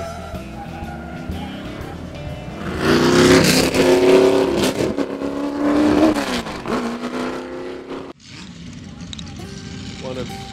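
Single-seater Formula racing car engine at high revs, rising in pitch and then falling away as the car goes by. The sound cuts off abruptly about eight seconds in.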